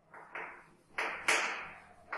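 Chalk striking and drawing across a chalkboard in four short strokes, each fading out over a fraction of a second.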